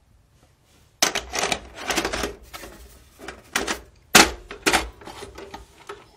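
VHS video cassette recorder loading a tape: a run of sharp mechanical clicks and clunks from its cassette mechanism, starting about a second in, with a second loud clatter about four seconds in.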